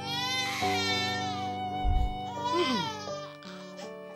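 A baby crying in two wavering bursts, the first about a second long and a shorter one near the three-second mark, over music with steady held notes. A low thud comes about two seconds in.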